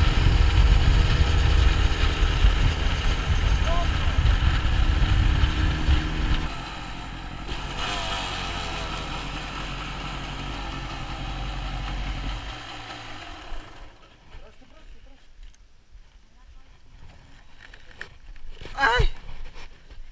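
Yamaha DT 200 two-stroke single-cylinder dirt bike engine running under throttle while riding. About six seconds in the throttle closes and it runs on at a lower steady level, then dies away about two-thirds of the way through as the bike comes to rest.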